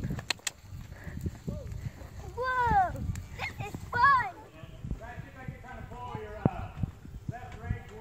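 Horse hoofbeats on arena dirt, with a person's voice calling out loudly twice, about two and a half and four seconds in, and quieter talk after that.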